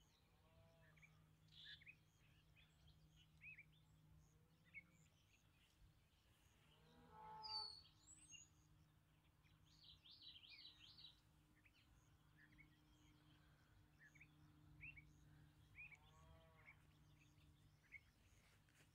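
Near-silent outdoor ambience: scattered faint bird chirps over a low steady hum. A few brief drawn-out animal calls come through, the loudest about seven seconds in and another near the end.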